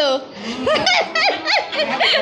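A woman laughing in a run of short, high-pitched bursts.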